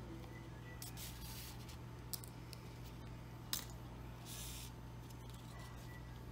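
Faint rustle of ribbon and sewing thread as the thread is drawn through and the stitches are pulled up to gather a ribbon bow by hand, with two small sharp clicks in the middle, over a steady low hum.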